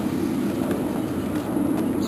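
Steady low rumble of road traffic.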